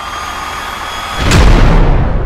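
Jet aircraft sound effect: a rushing engine noise with a thin whine swells, then a loud crash about a second and a half in, with a heavy low rumble, as the plane smashes down onto a bus.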